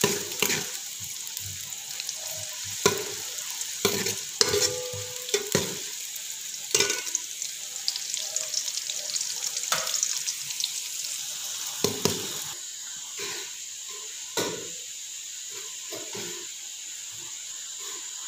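Sliced onions sizzling in hot ghee in a metal pot, being lightly fried. A steel ladle stirs them, knocking and scraping against the pot several times in the first few seconds and only now and then later.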